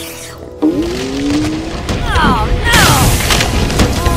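Background music with cartoon-style sound effects: a rising tone starting about half a second in, a few quick falling glides in the middle, then a loud rumbling boom from just before three seconds in, the effect for lava erupting.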